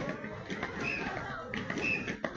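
Chatter of a crowd of children and onlookers, with a short high-pitched tone recurring about once a second.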